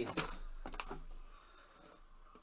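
A few light clicks and taps from handling a shrink-wrapped trading-card box on a tabletop, fading to quiet room tone after about a second.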